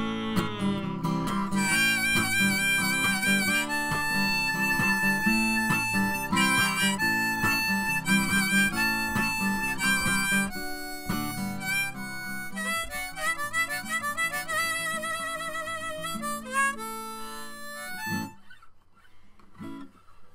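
Harmonica solo, played from a neck rack, over a strummed acoustic guitar, with some notes held and wavering; the music ends about two seconds before the end.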